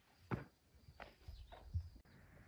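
Faint footsteps: three steps about two-thirds of a second apart.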